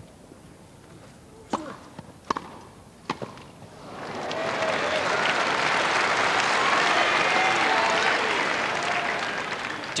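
Tennis ball struck three times in a short rally on a grass court, crisp racket hits a little under a second apart, followed after about four seconds by loud crowd applause and cheering that swells and then eases toward the end as the point is lost on serve.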